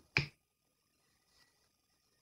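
A single sharp click about a quarter of a second in, followed by a much fainter tick near the middle.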